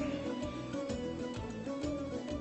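Background music with a traditional, folk-like feel: a melody of held notes over a steady beat.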